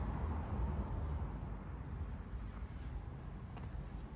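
Low, steady background rumble with no distinct event in it.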